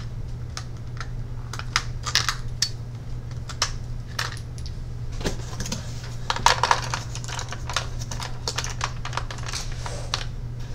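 Scattered light clicks and taps at irregular intervals, with a brief busier cluster a little past the middle, over a steady low hum.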